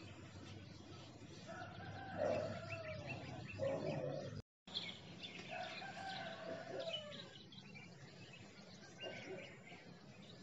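A bird calling in the background: two long, wavering calls of about two seconds each, broken by a brief dropout between them.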